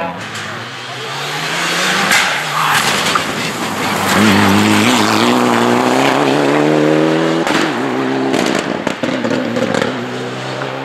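Mitsubishi Lancer Evolution IX R4 rally car's turbocharged four-cylinder engine revving hard at full throttle, rising in pitch under acceleration, with a sharp break in the note near seven and a half seconds as the driver lifts or shifts, then pulling hard again.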